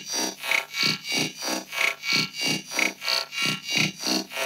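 Casio CZ-230S synthesizer playing its Bossa Nova rhythm pattern, processed through an Alesis Midiverb 4 multi-effects preset: a steady repeating beat of about three pulses a second.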